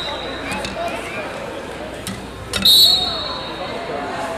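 A referee's whistle blown once, a short shrill blast about two and a half seconds in, starting the wrestling bout. Voices chatter in the background throughout.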